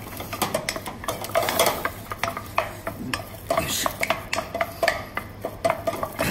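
Wooden spatula beating choux paste in a stainless steel saucepan: quick, irregular scraping and slapping strokes against the pan as the dough takes up the egg yolk.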